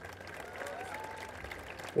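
Audience applauding, faint and steady.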